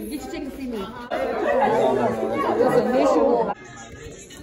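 Several people talking over each other in a hall. The chatter is louder from about a second in, then cuts off suddenly near the end.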